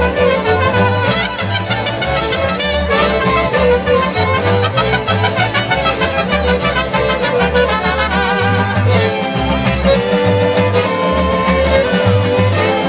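Mariachi band playing live: violins carry the melody over strummed guitars and the deep, pulsing bass notes of a guitarrón.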